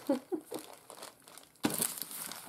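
Rustling and crinkling of a clear plastic bag and papers as a craft kit's contents are handled, with a louder crinkle near the end.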